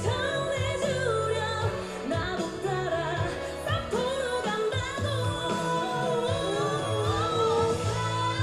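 Live pop performance by a female vocal group: a woman singing long, gliding melody lines into a microphone over band accompaniment.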